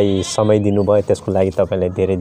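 Speech only: a man talking in a low voice, with no other sound standing out.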